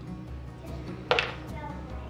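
Quiet background music, with one brief sharp sound about a second in.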